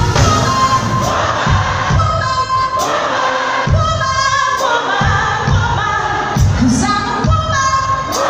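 A live R&B band playing with a woman singing lead over a steady beat of about two a second, heard from the audience seats of a large theatre.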